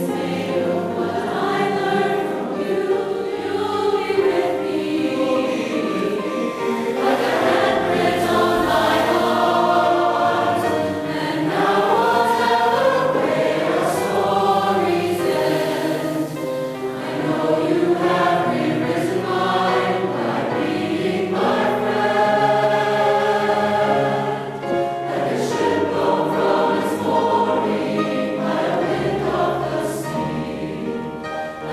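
Mixed choir of men's and women's voices singing together in held, sustained notes that move through changing chords without a break.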